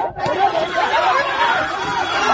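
A crowd of many people shouting at once, their voices overlapping, with a brief break just after the start.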